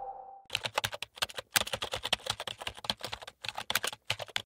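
Keyboard typing: a rapid, uneven run of key clicks starting about half a second in, after the last of a music sting dies away.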